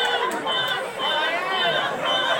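Crowd chatter: many voices talking over one another at once.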